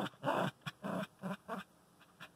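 Small dog giving a quick run of about five short, soft vocal sounds over a second and a half, frustrated at treats in a jar that it cannot get out.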